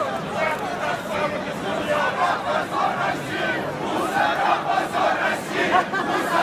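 A large crowd of protesters shouting at once, many voices overlapping into a loud, continuous din.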